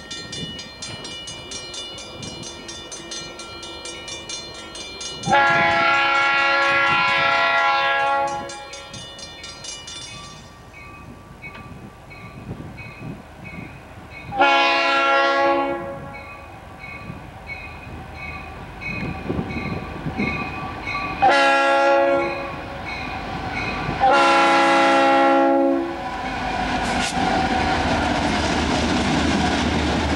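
Air horn of a CSX freight led by an ex-Seaboard SD50 locomotive, blowing a chord of several notes in the grade-crossing pattern: long, long, short, long. The rumbling noise of the train grows louder near the end.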